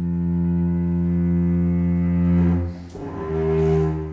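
Microtonal contemporary string music: a low bowed string note is held steadily, then breaks off about two and a half seconds in. After a brief noisy gap, a second low held note follows.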